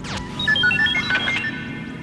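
Science-fiction electronic sound effect: a quick falling electronic swoop, then a rapid run of short beeps hopping between different pitches.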